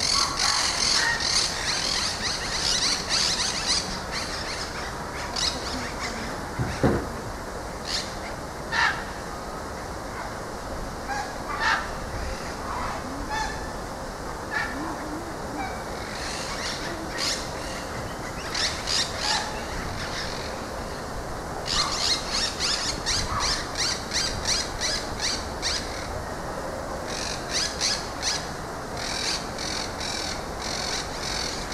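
Small birds chirping in quick runs of short, high notes that come and go, with a few single lower chirps and one dull thump about seven seconds in.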